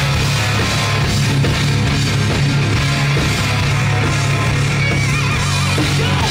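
A hard rock band playing live: distorted electric guitars, bass guitar and a drum kit in a loud passage with no vocals, the bass holding heavy sustained notes.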